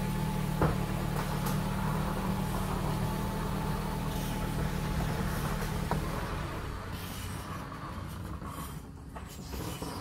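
Garage door closing, a steady low motor hum with mechanical noise that stops about six seconds in, after which the sound fades.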